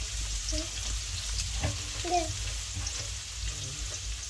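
Sliced red onions sizzling in hot oil in a non-stick wok as they are stirred, a steady frying hiss with a few short scrapes.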